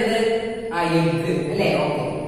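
A woman's voice reciting in a slow sing-song chant, with long held syllables in two or three phrases.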